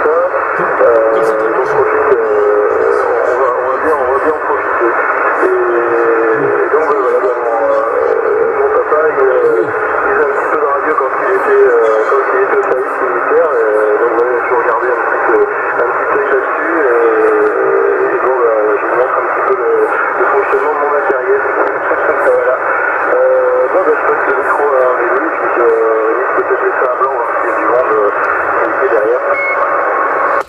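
Another CB station's voice received in upper sideband through a Yaesu FT-450 transceiver's speaker on channel 27: continuous, thin, band-limited radio speech.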